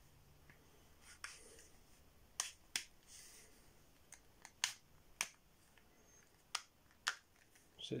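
A handful of sharp, irregular clicks and taps, about seven in all, as a wooden-handled ferro rod is handled and pushed into a snug tooled leather holder.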